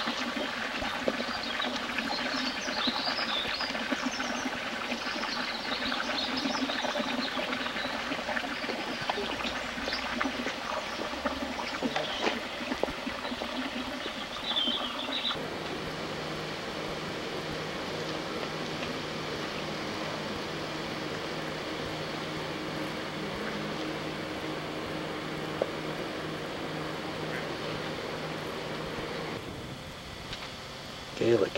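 Small birds chirping and singing over a steady outdoor hiss. About halfway through, the sound cuts to a steady low hum and hiss with no birdsong.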